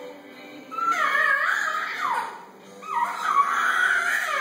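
High-pitched sing-song vocal sounds that glide up and down, in three phrases with short dips between them, over faint steady background tones.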